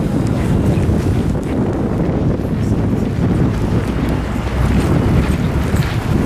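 Wind buffeting the camera microphone: a loud, uneven low rumble that flutters throughout.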